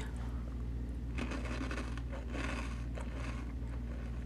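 Faint crunching of a crispy espresso-flavoured wafer roll being chewed, in a few soft patches, over a steady low hum.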